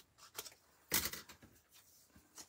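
Scissors snipping thin cardstock, trimming the edges of a small paper piece: a few short cuts, the loudest about a second in.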